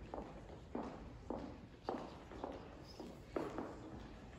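Footsteps on a wooden stage floor: a steady walk of about two steps a second.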